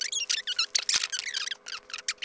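Rapid, irregular plastic squeaking and crinkling as the legs of a NECA Gremlins Spider action figure are worked into their stiff joint sockets by hand, the joints not softened in warm water.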